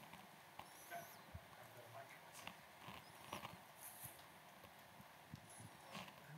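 Near silence: room tone with faint, scattered clicks.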